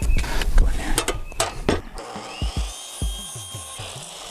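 DeWalt miter saw starting up and cutting across a wooden board: its motor whine rises about halfway through and then holds steady as the blade goes through the wood. Knocks and clatter come before it as the board is set against the fence.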